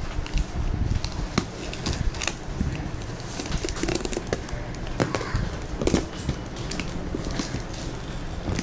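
Packing tape and cardboard of a laptop shipping box being picked and scraped at to break the seal: irregular sharp clicks, scratches and crackles, with a steady low rumble underneath.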